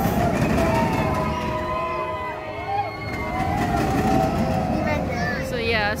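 A steel roller coaster train rumbling along its track, a steady low rumble, with voices in the background.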